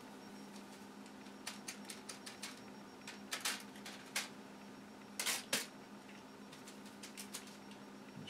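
Faint scattered clicks and short scratchy scrapes of a paintbrush mixing matte medium into an acrylic glaze on a foil-covered palette. A few louder scrapes come a little past the middle.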